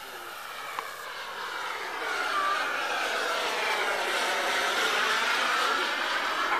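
Radio-controlled jet model flying past overhead: a high-pitched whine that grows louder over the first two seconds and then holds, its pitch sweeping down and back up as it passes and manoeuvres.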